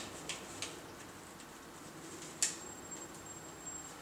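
Faint clicks and taps of food containers being handled on a kitchen counter: a few light clicks in the first second, then a sharper click about two and a half seconds in, followed briefly by a faint high tone.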